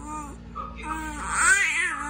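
Baby cooing and squealing happily in short, high-pitched, rising-and-falling vocal sounds. The loudest squeal comes about one and a half seconds in.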